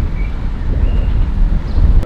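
Wind buffeting a moving camera's microphone: a loud, uneven low rumble.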